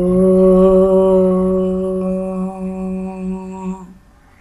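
A single voice chanting a long, held "Om" on one steady pitch. It slowly grows quieter and stops just before the end.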